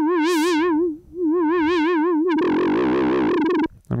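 Behringer DeepMind 12 analog synthesizer playing a soft, flute-like square-wave note with fast, even vibrato from an LFO on pitch, while a second LFO sweeps the filter cutoff so the tone repeatedly brightens and dulls. The note is played twice, and the second time it turns thicker and buzzier partway through before stopping.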